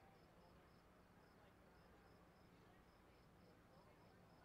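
Near silence, with faint crickets chirping in steady pulses, about four a second, over a low steady hum.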